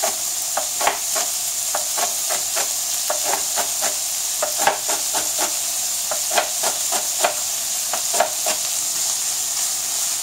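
Knife chopping spring onions on a plastic cutting board in quick, uneven strokes, over the steady sizzle of bacon and red pepper frying in a pan.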